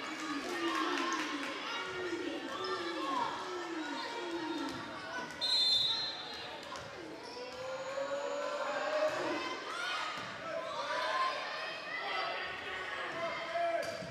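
Spectators' voices filling a gym, with a quick run of repeated calls from the stands at first. About five and a half seconds in, a referee's whistle gives a short blast, the signal to serve.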